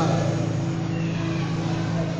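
Electronic keyboard holding a low sustained chord, a steady drone with no break.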